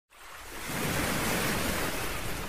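A steady rushing noise, like surf or static, that swells up over the first second and then holds.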